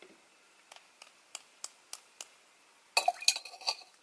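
A watercolour brush tapping against a hard container in light clinks, about three a second, then a quick run of louder sharp taps about three seconds in as paint is flicked off the brush in spatters onto the paper.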